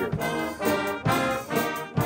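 Pep band brass of trumpets, trombones and sousaphones playing the school fight song over a drum kit keeping a steady beat, about two hits a second, a little slower than the song is usually played.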